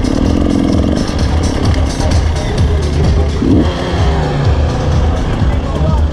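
Enduro motorcycle engine running at low revs while the bike rolls slowly, with music playing over it.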